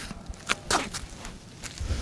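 Footsteps on an outdoor trail: a handful of short, unevenly spaced steps. A brief low rumble near the end.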